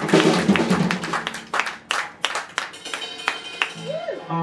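Small audience applauding, the clapping dense at first and thinning out after about two seconds, over a steady low hum from the band's amplified instruments.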